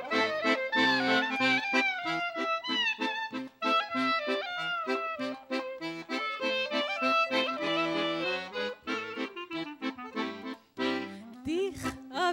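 Accordion and clarinet playing an instrumental passage: the accordion keeps a steady rhythmic chord accompaniment while the clarinet plays the melody with sliding, bending notes. A singing voice comes in just at the end.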